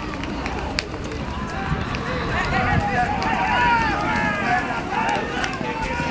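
Voices calling and shouting over a horse race as racehorses gallop on the dirt track, with short hoofbeat-like knocks underneath. The shouting grows louder a few seconds in.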